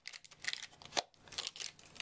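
Light handling noise: a plastic hub cover being fitted back onto an optical drive's sheet-metal casing and the paper label crinkling as it is pressed down, with a few small clicks, the sharpest about a second in.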